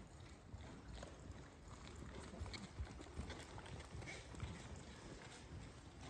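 Faint hoofbeats of a ridden horse moving over the soft dirt footing of an indoor arena.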